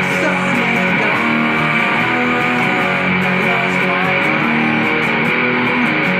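Custom-built electric guitar with two humbucking pickups, strung with 11–50 gauge strings, played loud through a Mesa/Boogie combo amplifier: continuous rock playing with sustained notes and no breaks.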